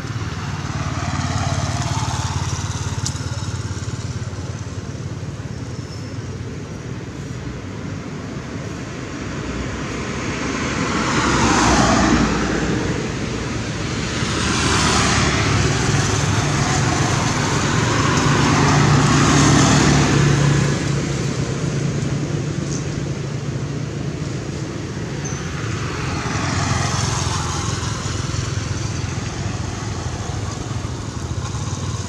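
Road traffic: motor vehicles passing by one after another, about five times, each swelling and fading over a steady low engine hum, the loudest passes near the middle.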